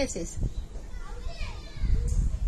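Children playing and calling out in the background, with a few high, gliding shouts near the middle, after a woman's short word at the start.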